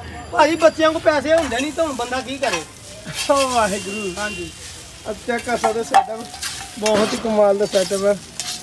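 Metal spatula stirring and scraping fried noodles on a hot flat iron griddle (tawa), with sizzling and pitched scrapes of metal on metal that glide up and down.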